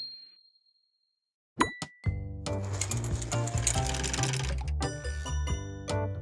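Cartoon soundtrack: a single high chime rings out and fades, then after a second of silence two quick sweeping sound effects lead into bouncy children's music with a steady bass line and bright chiming notes.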